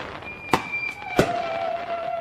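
Fireworks going off: two sharp bangs, about half a second and a second in, over a thin steady tone that is still sounding at the end.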